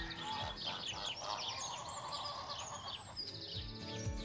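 Birds chirping in quick overlapping calls over a soft hiss, while a music bed with a light beat fades back and returns near the end.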